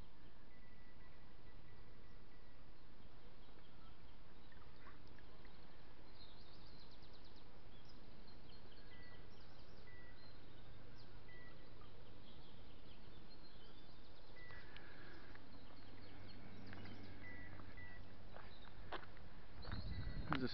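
Steady, quiet outdoor background noise with faint birdsong: short repeated whistles and chirps that come and go.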